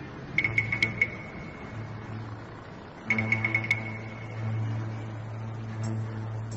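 Dramatic background score: a steady low drone with two quick flurries of about five high, same-pitched metallic strikes, one near the start and one about three seconds in.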